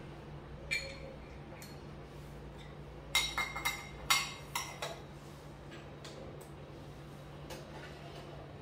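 A few light glass clinks and taps from bench work at an analytical balance: one about a second in, then a quick cluster from about three to five seconds in, each with a short ringing tone, over a steady low hum.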